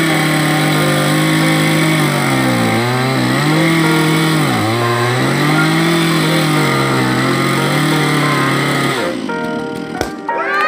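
Two-stroke chainsaw running at high revs through the back cut of a tree felling, its pitch sagging twice under load, then cutting off about nine seconds in.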